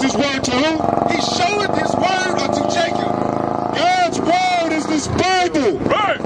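Men's voices preaching and reading aloud through a handheld microphone and amplifier, loud and raised toward the end. From about one to four seconds a steady drone runs underneath, like a vehicle engine.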